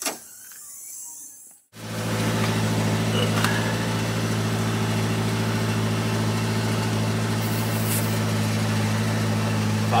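Portable air compressor switching on about two seconds in and running steadily with a low buzzing hum, pumping air into a freshly plugged car tire.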